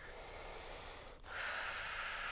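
A faint pause, then a little past halfway a long, steady breath begins, hissing evenly and lasting beyond two seconds.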